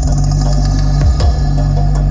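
Electronic music with heavy sustained sub-bass and a beat about once a second, played loud through a large outdoor JIC demo sound system of line-array tops and LS 18125 subwoofers.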